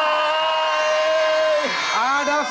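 A man's voice holding one long, high, steady shouted note, like a drawn-out greeting call, which falls away shortly before the end.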